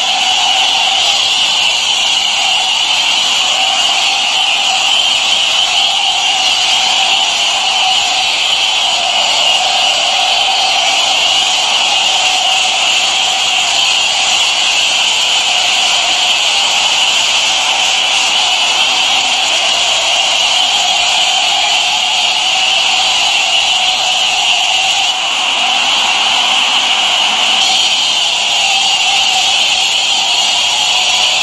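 High-pressure car-wash wand spraying water onto a small walk-behind tractor: a steady, loud hiss of the jet with a steady lower tone beneath it, dipping briefly once late on.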